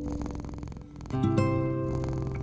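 Solo acoustic guitar with a cat purring underneath. The guitar notes fade away over the first second, leaving the purr most plain, and then new notes are plucked a little after a second in.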